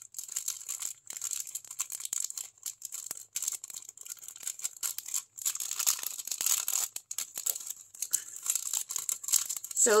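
Clear plastic bag crinkling and rustling in irregular crackles as hands open it and work paper blending stumps out.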